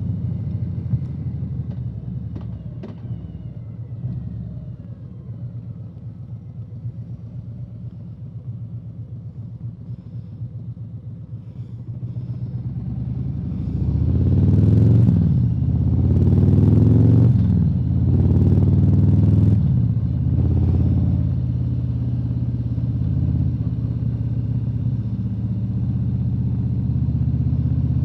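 Touring motorcycle engine running at low revs while the bike slows and makes a U-turn, then pulling away about halfway through, climbing in pitch and dropping back several times as it accelerates through the gears, before settling into a steady cruise.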